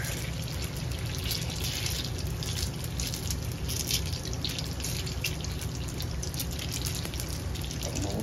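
Panko-coated curry buns deep-frying in oil at about 175 °C: a steady sizzle full of small crackling pops. A low hum runs underneath.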